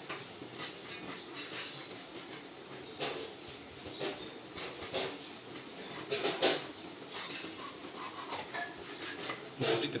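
Hilsa being cut into steaks on a bonti blade: irregular crunches, scrapes and knocks as the fish is pressed down through the blade, with clinks of handling among them. The loudest knocks come about six seconds in.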